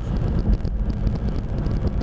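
Steady low rumble of traffic and road noise, with wind buffeting the microphone.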